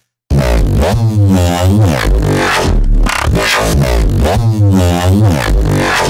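Heavily distorted Reese-style synth bass patch (Sytrus FM/ring modulation through flanger and Maximus waveshaping), playing a loud looped phrase. Its tone moves in repeated vowel-like sweeps, with fuzzy distortion on the top end. It starts about a third of a second in and cuts off abruptly at the end.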